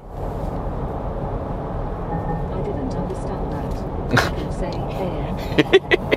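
Steady cabin noise of a Ford Ranger Bi-Turbo pickup cruising on a highway: a low drone of road, tyre and engine noise heard from inside the cab. A voice comes in briefly near the end.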